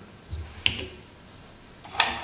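A single sharp click of a hard plastic toy part, the ladder piece of a Transformers Rescue Bots Heatwave figure, being handled, about two-thirds of a second in.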